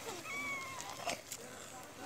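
A young child's brief, faint high-pitched call, bending slightly down in pitch, followed by a couple of soft clicks.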